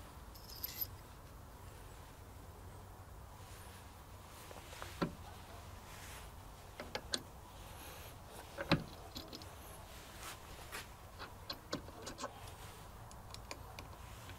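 Scattered light metallic clicks and taps as a steel annular cutter and its pilot pin are handled and pushed into the magnetic drill's arbor, with a few sharper knocks among them and a run of small clicks near the end as a hex key tightens the set screws.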